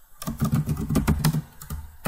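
Typing on a computer keyboard: a quick run of keystrokes for about a second and a half, then a brief pause near the end.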